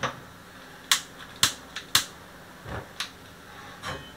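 A handful of sharp metallic clicks and knocks, irregularly spaced over a few seconds, as an enamel pot is handled and lifted off a gas stove's burner grate.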